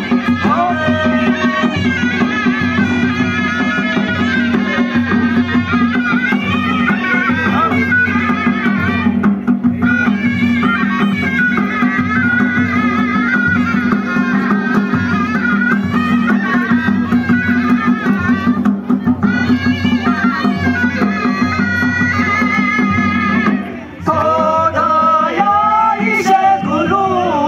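Live Ladakhi folk music: a shawm (surna) plays a wavering, reedy melody over a steady low drone, with regular drum beats. Near the end the instruments drop out briefly and male voices start singing.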